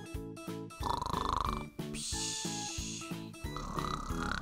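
Cartoon snoring sound effect over light background music: a buzzing snore about a second in, then a hissing breath out, and a second snore starting near the end.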